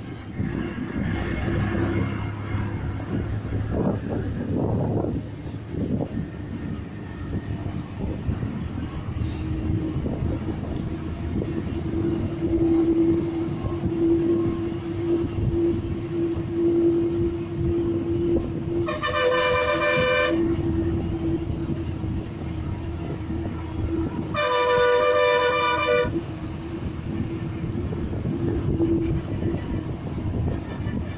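Bus engine running steadily with a constant whine, and a horn blown twice in long blasts, each about a second and a half, past the middle.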